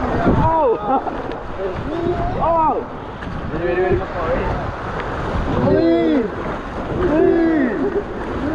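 Water rushing under a raft sliding down a water slide, with wind on the action camera's microphone, while the riders yell and whoop several times with rising and falling pitch.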